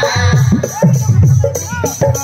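Folk music from a hand-played double-headed barrel drum (dholak) beating a lively rhythm, its low strokes sliding down in pitch. A sustained harmonium chord breaks off right at the start.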